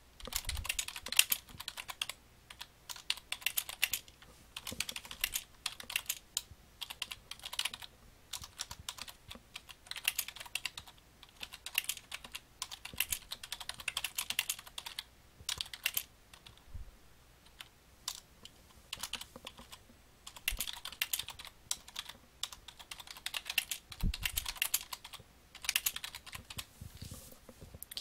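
Typing on a computer keyboard: quick runs of key clicks broken by short pauses as a sentence is typed out.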